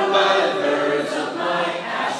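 A crowd of voices singing together, holding long notes of a song.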